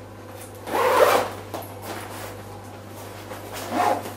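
A rucksack's fabric and straps being handled, with a rasping, zip-like rustle about a second in and a shorter one near the end, over a steady low hum.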